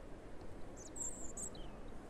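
European robin giving a short, high twittering phrase about a second in, ending in a brief falling note.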